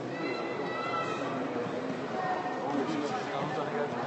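Several people talking at once, voices close to the microphone, over a general crowd murmur.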